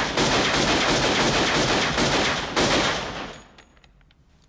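Pistols fired in a rapid, continuous volley, shot after shot with no pause, stopping about three and a half seconds in.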